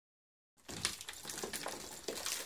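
Brick and crumbling mortar of a brick pier scraping and clattering as it is broken apart, with many small knocks and one sharper knock just under a second in.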